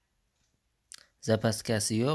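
A single short click about a second in, then a person's voice speaking.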